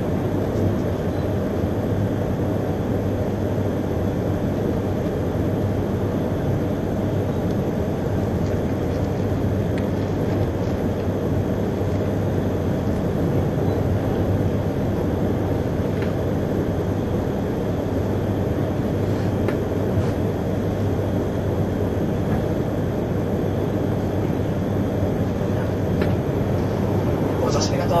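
Steady running noise inside a carriage of an E3-series Akita Shinkansen "Komachi" train travelling at speed: an even low rumble with a steady hum and a few faint clicks.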